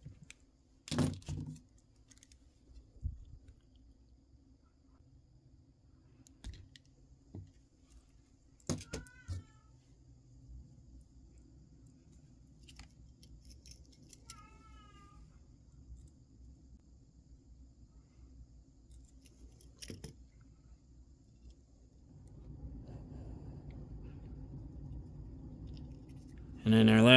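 Sharp metallic click of wire cutters snipping a wire about a second in, followed by a few lighter tool clicks. A cat meows twice, briefly, a little after the middle. Near the end a low steady noise comes in.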